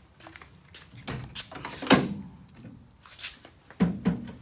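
A car door being handled, most likely the 1969 Dodge Super Bee's driver's door: a few clunks and knocks, the loudest about two seconds in and another near the end.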